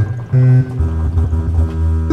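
Electronic music between vocal lines: a short held note with overtones, then a steady low bass drone from about a second in.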